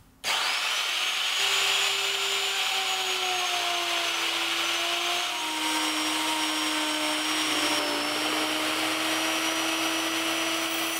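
Electric router with a 3/4-inch straight bit switched on and cutting a groove in solid zebrawood: it starts suddenly with a rising whine as the motor spins up, then runs steadily, its pitch dipping slightly now and then as the bit works through the wood.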